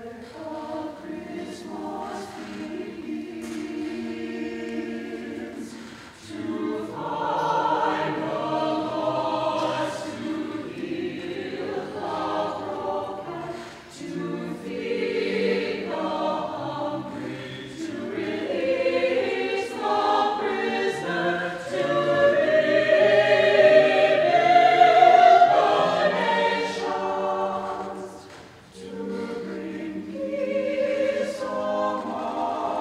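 Mixed-voice chamber choir singing sustained choral lines. The sound swells louder about six seconds in, builds to its loudest in the last third, and briefly drops away near the end.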